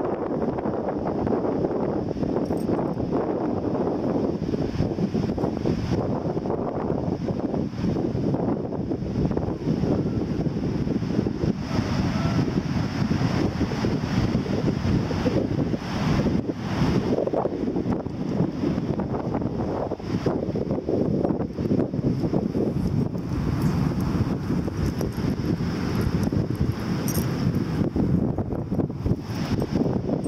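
Wind blowing across the microphone: a steady low rumble of noise.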